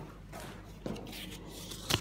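Quiet rustling of a hand at a wooden hotel room door, then a single sharp click near the end.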